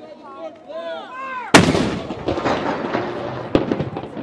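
A towed artillery howitzer fires one blank saluting round about a second and a half in, with a long rumbling echo after it. A second, shorter crack comes about two seconds later.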